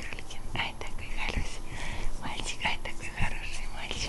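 A giant schnauzer puppy at play makes short, irregular breathy huffs and snuffles while mouthing a plush toy, with soft rustling on a blanket.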